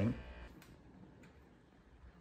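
Near silence: faint room tone after a man's voice trails off, with a faint tick or two.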